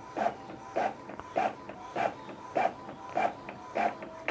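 Epson L3250 inkjet printer printing a page: the print head shuttles back and forth, a short burst of sound about every 0.6 s, over a faint steady tone.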